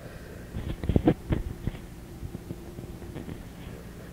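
A cluster of small clicks and knocks about a second in, handling noise on a home cassette recording, over the tape's steady low hum; a faint steady tone follows for a couple of seconds.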